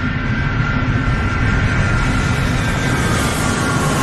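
Sound effect of a rocket in flight: a loud, steady engine noise with a deep rumble underneath and a high whistle that slowly falls in pitch near the end.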